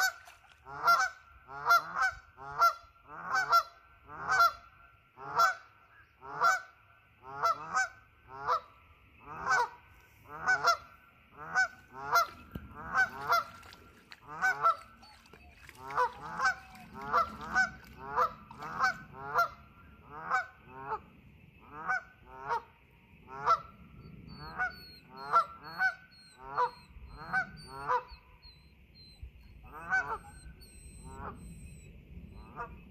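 Canada geese honking over and over, about one to two loud honks a second, with a short pause near the end.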